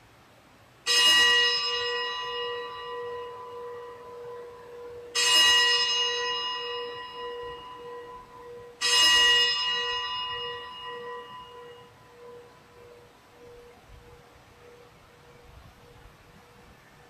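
A bell struck three times, about four seconds apart, each stroke ringing out and slowly fading, with a low hum lingering after the last. It is the consecration bell, rung at the elevation of the host right after the words of institution.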